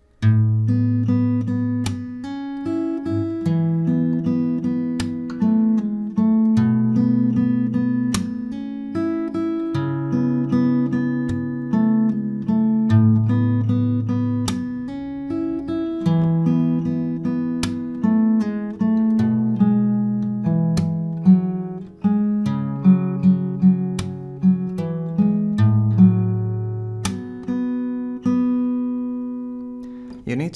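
Steel-string acoustic guitar with a capo, played fingerstyle: a picked melody over alternating bass notes, with percussive slaps on the strings mixed in. The last notes ring out near the end.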